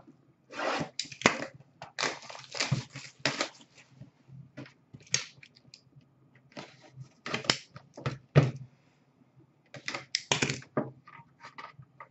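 Hands opening a boxed pack of hockey trading cards: irregular bursts of cardboard packaging rustling, scraping and tearing, with short quiet gaps.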